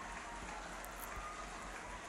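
Faint, steady outdoor ambient noise from the pitch: an even hiss with a low rumble and no distinct events.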